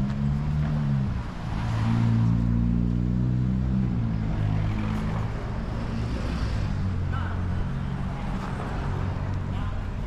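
Car traffic at a city intersection: a nearby car engine hums low and steady, loudest in the first few seconds, its pitch sinking and the hum easing about four seconds in as it moves off.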